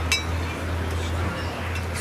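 A single short, ringing clink of cutlery against a dish just after the start, over a steady low hum of background noise.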